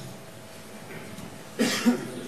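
Quiet courtroom room tone, then a person coughing briefly near the end, a short cough in two quick parts.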